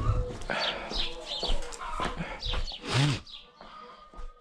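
Farmyard animal calls: repeated short high chirps, with one short, lower call about three seconds in.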